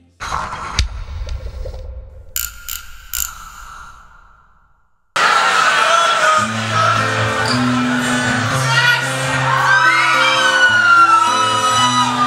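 Live band music: a quieter, fading stretch with scattered clicks, then about five seconds in a new instrumental passage starts abruptly, with a stepping bass line and guitar. Voices whoop over it.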